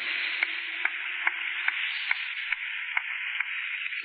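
Steady hiss of the recording's background noise, with faint clicks at an even pace of a little over two a second and a low hum that fades out about halfway through.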